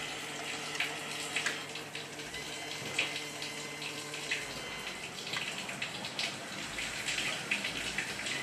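Water running through a 5900-BT filter control valve as it is advanced through its regeneration cycles, a steady rush with scattered light clicks. A faint steady hum under it fades out about halfway through.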